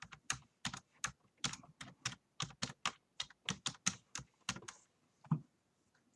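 Typing on a computer keyboard: a quick, uneven run of keystrokes, about five a second, that stops about five seconds in.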